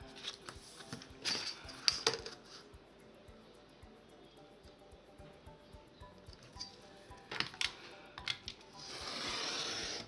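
Kraft cardstock slid on a cutting mat and a steel ruler set down, with light clicks and knocks. Near the end a craft knife is drawn through the card along the ruler in one steady stroke lasting about a second.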